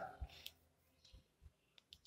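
Near silence: room tone with two or three faint, brief low thumps and a tiny click.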